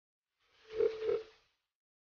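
A short inserted sound effect on an otherwise silent soundtrack: two quick beeps on the same mid pitch, about a third of a second apart, lasting about a second in all.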